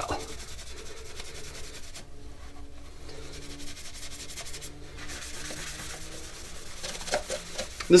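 Cloth rubbing and buffing over a plastic armor bracer's silver wax and graphite finish, a steady scuffing that runs on with the strokes.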